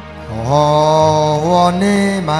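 A man singing a long held note over sustained backing chords, his voice stepping up in pitch about one and a half seconds in.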